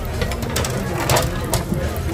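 Flat metal spatula scraping and knocking against a round steel tabletop barbecue grill plate: a few short scrapes, the loudest about a second in, over background chatter.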